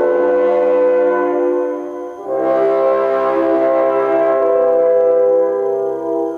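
Brass choir playing sustained chords, horns prominent. About two seconds in the chord briefly thins and a fuller chord enters, with low brass added underneath.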